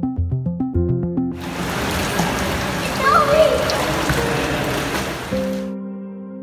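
Background music with a beat stops about a second in, giving way to the steady noise of splashing water in an indoor swimming pool, with a brief child's call in the middle. Soft sustained synth chords come in near the end.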